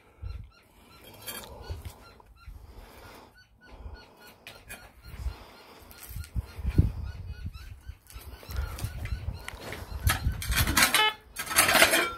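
Small steel shovel digging and scraping into rocky, gravelly soil, with stones clattering against the blade. The scraping grows louder near the end.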